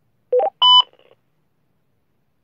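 Two-way radio signalling tones: three short electronic beeps in quick succession, stepping up in pitch, about a third of a second in.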